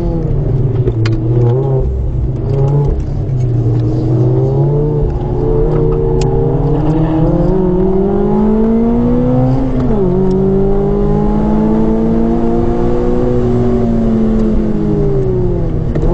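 Modified Mazda MX-5 ND's 2.0-litre Skyactiv four-cylinder with a 4-into-1 manifold and Cobalt muffler, heard from the open cockpit at track pace. Revs dip with a few sharp cracks in the first seconds, then climb steadily under acceleration until an upshift drops them suddenly about ten seconds in, after which the engine pulls on and eases off near the end.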